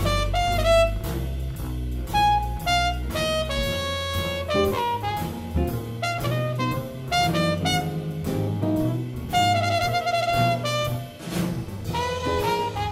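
Big band jazz: saxophones and brass playing lines over a walking bass and drum kit.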